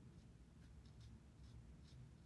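Near silence with a few faint, short strokes of a watercolor brush on paper.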